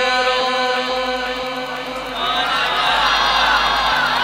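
A man's voice chanting a long, drawn-out melodic line on held notes. About halfway through, many voices join in and the level rises.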